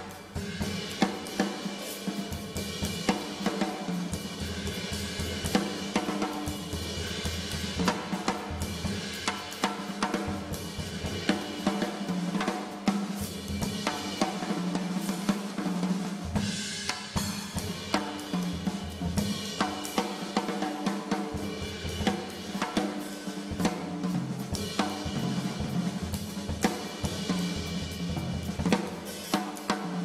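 Jazz drum kit played in a busy, continuous groove: snare, bass drum, hi-hat and cymbals struck in a dense run of hits.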